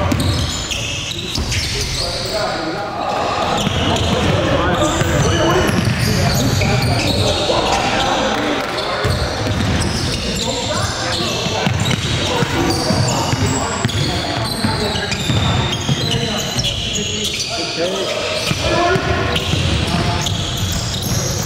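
A basketball dribbling and bouncing on a hardwood gym floor among players' indistinct shouts and calls, in an echoing gymnasium.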